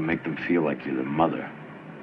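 A man's voice speaking briefly, over a low room background.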